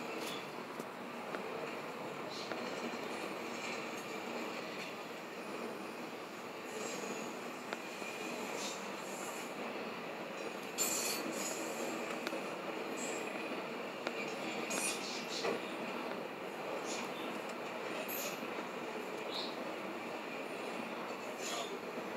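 Norfolk Southern intermodal freight train's cars rolling past: a steady rumble of steel wheels on rail, with scattered sharp clanks.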